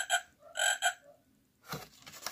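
Recorded frog croak from a children's sound book's button, played as two double croaks in the first second. A soft knock follows near the end.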